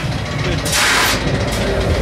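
Fairground machinery running with a steady low rumble, and a short loud hiss of about half a second in the middle.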